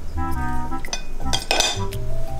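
Background music with a steady beat, and about one and a half seconds in, a short clatter of wooden chopsticks against a ceramic plate.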